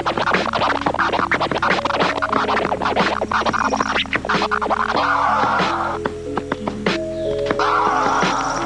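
Vinyl record scratched by hand on a DJ turntable, in rapid back-and-forth strokes cut with the mixer, over a musical backing of held notes that step through a melody. The strokes come thick and fast for the first five seconds, then give way to a longer, smoother scratch.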